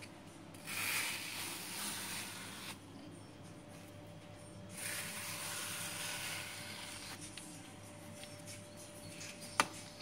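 Ice cream scoop scraping through firm frozen homemade ice cream in a plastic tub, in two rasping passes, then a single sharp click near the end.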